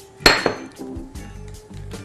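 A sharp clink of kitchenware about a quarter second in, with a short high ring, then a few lighter knocks, over faint background music.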